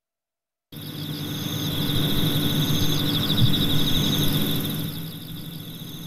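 Field ambience: insects chirping steadily at a high pitch, over a low engine hum that swells and then fades, as of a vehicle passing. It starts suddenly after a moment of silence.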